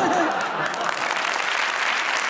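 Studio audience clapping and laughing; the applause comes in dense and steady just after the voice trails off.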